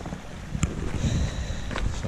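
Wind buffeting the microphone, an uneven low rumble, with a faint thin high whistle for most of a second about halfway through.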